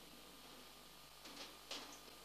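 Near silence: faint background hiss, with two faint brief sounds in the second half.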